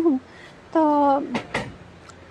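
A woman speaking in Urdu stops after a word, and after a short pause she draws out one syllable that falls in pitch. This is followed by two brief sharp sounds about a quarter second apart.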